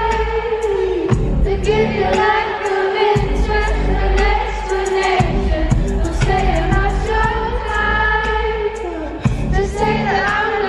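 Live pop concert music in an arena, heard from the audience: singing over a deep bass line and a beat.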